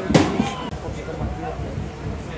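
A football being kicked hard out of the goalmouth: one sharp thud at the start, followed by men shouting on the pitch.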